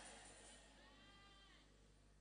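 Near silence in a hall: the echo of a shouted line dies away, with one faint, brief high-pitched call that rises and falls, about a second in.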